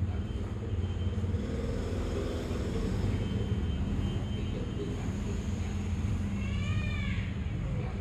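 Steady low rumble of background noise, with a short rising-and-falling pitched sound near the end.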